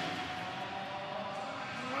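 A pack of supercross motorcycles accelerating hard off the start gate, many engines running at once as one steady wash of noise, with a pitch that rises slowly.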